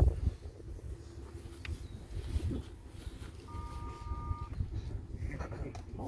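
Low rumble of wind buffeting the microphone in an open field, with faint murmuring from the crowd. About halfway through, a short, steady two-note tone sounds for about a second.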